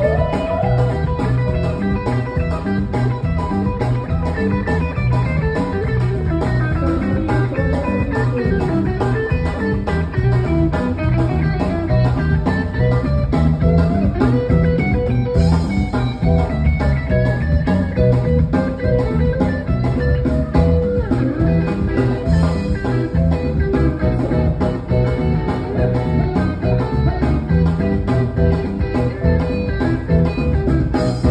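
A live band playing, with an electric guitar to the fore over a steady, pulsing bass rhythm; the guitar's melody line glides and bends.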